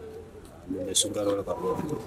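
Speech: a voice talking in dialogue after a short pause, starting under a second in.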